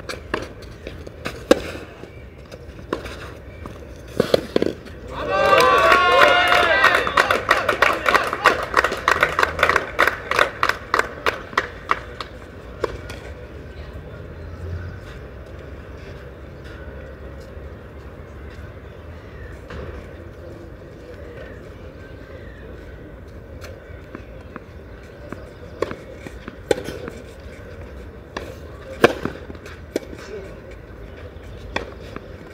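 Tennis ball struck by rackets in a rally, a few sharp hits. Then spectators clap and call out loudly for several seconds after the point, the clapping thinning out. A few ball bounces and hits come near the end as the server prepares.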